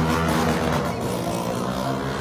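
A vehicle engine running with a steady drone.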